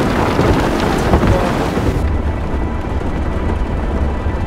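Heavy rain pounding on a moving car, heard from inside the cabin, over a steady deep rumble. The hiss dulls about halfway through.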